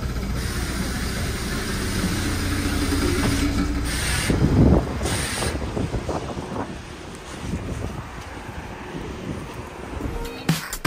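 A Wright Eclipse 2 city bus stands at a stop with a steady low hum from inside. About four and five seconds in there are two short hissing bursts. After that the sound drops to quieter street noise with scattered knocks.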